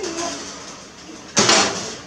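A single sudden metal clank about a second and a half in, with a short ringing fade, as a baking sheet of baked rolls comes out of the oven onto the stovetop.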